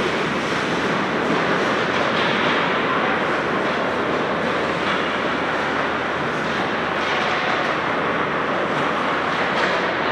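Many ice hockey skate blades scraping and carving on rink ice at once, with hockey sticks and pucks clattering, as a group of players skates off together.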